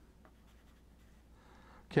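Pencil lead scratching faintly on drawing paper in short sketching strokes.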